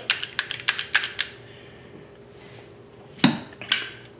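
Firearm parts of an LWRCI SMG45 clicking and knocking as they are handled and fitted during reassembly. There is a quick run of light clicks in the first second or so, a short pause, then two sharper clicks near the end.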